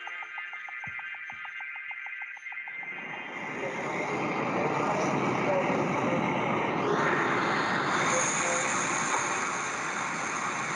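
Video soundtrack: music with a fast pulsing tone, about seven or eight beats a second, fades out in the first three seconds. A steady rushing noise then rises and holds, growing brighter about seven seconds in.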